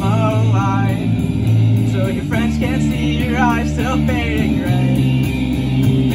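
Live rock band playing: distorted electric guitars holding chords over a drum kit, with a sung vocal line over the top, through a small PA and heard on a phone's microphone.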